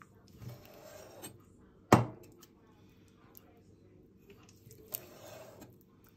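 Meat cleaver slicing through raw chicken breast on a granite countertop. A soft cutting rasp comes first, then the blade strikes the stone with a sharp, loud knock about two seconds in. A second, lighter knock and more slicing come near the end.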